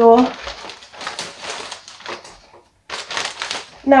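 Thin plastic carrier bag rustling and crinkling as it is handled and folded. It comes in two stretches, with a short pause not long before the end.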